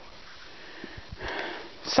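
A person drawing an audible breath in, a short noisy inhale in the second half, after a few faint low knocks.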